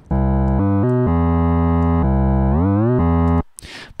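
Synth bass from Ableton Live's Simpler instrument (the 'Bass 05' preset) playing a MIDI line with glide switched on. Sustained notes change pitch, and near the end one note slides smoothly up into the next instead of jumping: the portamento effect of the Glide setting.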